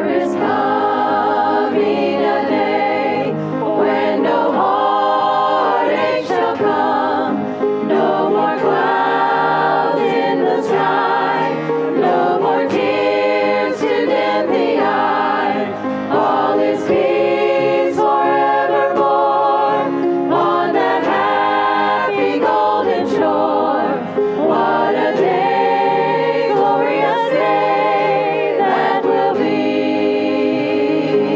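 A choir singing a gospel song, sung continuously with wavering, held notes.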